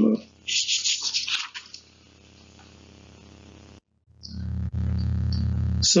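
A short hiss, then a steady low hum with faint overtones, quiet at first and much louder in the last two seconds after a brief dropout.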